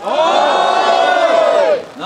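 A crowd of people shouting together in one long drawn-out call lasting nearly two seconds, the voices rising in pitch at the start and falling away at the end.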